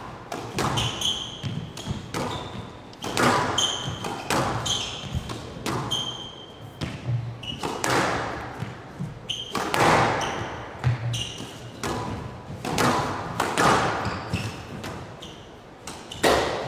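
A squash rally: repeated sharp strikes of the ball off rackets and the walls of a glass court, mixed with short high squeaks of shoes on the court floor.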